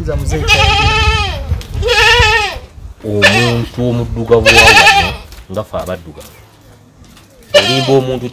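A goat bleating: three long, quavering bleats, each about a second long, with short gaps between them.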